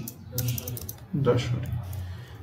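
A few computer keyboard key presses while a figure is typed, under a quiet, low voice.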